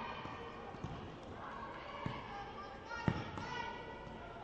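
Futsal ball being kicked and struck on a sports-hall floor: three sharp thuds, the loudest about three seconds in, heard through the reverberant hall. Indistinct voices run underneath.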